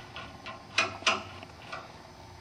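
A metal propeller nut being turned by hand onto the threaded end of a propeller shaft against a Max-Prop hub: a few light metallic clicks, the two clearest close together in the middle.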